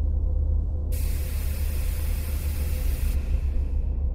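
Sound effect of a submarine pressure door opening: a rushing hiss starts about a second in and stops about three seconds in, over a steady low underwater rumble.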